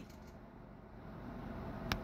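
Faint, steady whir of a handheld rotary carving tool running a small burr against cottonwood bark, with one sharp click near the end.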